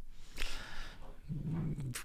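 A dog in the room huffs briefly, then gives a low, steady whining grumble.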